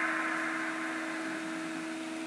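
Room tone: a steady hum with an even hiss underneath, and a soft rush of noise at the start that fades away.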